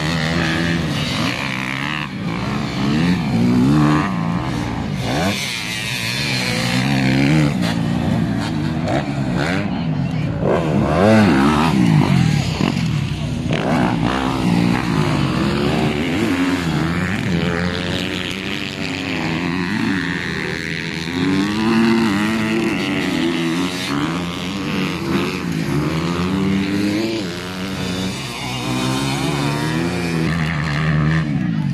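Several motocross dirt bike engines revving and running over one another. Their pitch rises and falls again and again as the bikes accelerate and back off.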